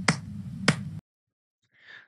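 Two slow hand claps about half a second apart over a low steady background hum, which cuts off suddenly about a second in.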